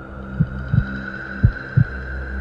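Heartbeat sound effect: low thumps in pairs, like lub-dub, about one pair a second, over a steady droning hum.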